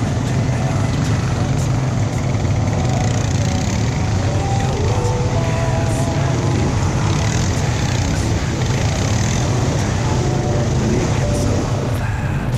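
Quad bike (ATV) engine running steadily with a constant low drone as it rides through mud, with a haze of tyre and wind noise over it.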